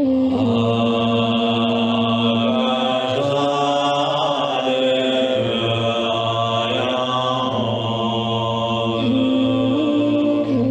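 A man chanting a mantra in long, sustained tones, with a deep drone beneath; the pitch shifts slightly about seven seconds in and again near the end.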